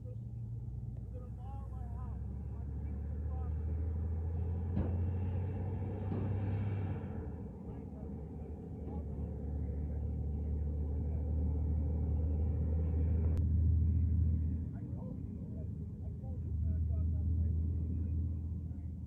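Faint, distant voices of people arguing across a campsite over a low, steady rumble that swells and fades, with a single sharp click about thirteen seconds in.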